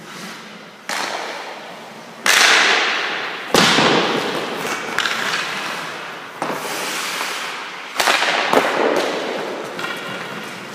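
Hockey sticks and pucks striking during a goalie drill: about six sharp cracks, each ringing out in the long echo of an ice arena.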